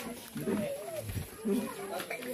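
A man weeping aloud in grief, his voice rising and falling in wavering, broken cries.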